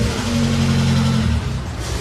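Engine of a homemade flat-fronted car running steadily, with a loud steady hiss over it.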